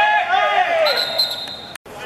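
Loud shouting from players on the pitch, a high voice rising and falling, followed by a steady high whistle lasting under a second. The sound cuts out abruptly near the end.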